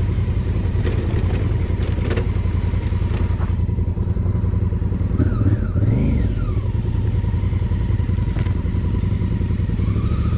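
Large adventure motorcycle's engine running steadily at trail speed on a rough dirt track, recorded from the bike itself. A few knocks of the bike over the bumps come in the first two seconds, and the engine swells briefly louder about halfway through.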